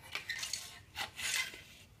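Small plastic Lego bricks on a model chassis clattering and clicking lightly as it is tilted and set back down on a wooden floor.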